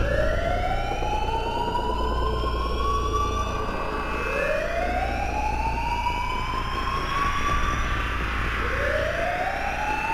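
Rising, wailing alarm siren that repeats: each wail climbs slowly in pitch over about four seconds, then starts low again, about three times, over a low steady rumble.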